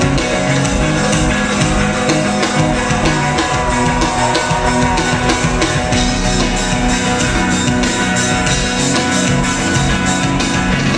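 Rock band playing live in an arena, heard loud through the PA: electric guitars over a steady drum beat, with a held, wavering note in the middle.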